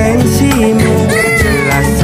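Background pop song with a steady beat, and over it a newborn baby crying: one drawn-out wail that rises and falls about a second in.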